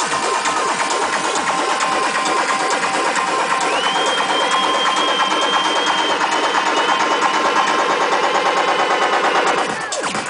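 Loud live techno played over a festival sound system, with a fast pulsing rhythm and little bass. A high held synth tone slides in about four seconds in and holds until the sound changes abruptly near the end.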